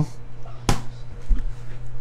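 A single sharp click, then a few soft, dull bumps of handling, over a steady low hum.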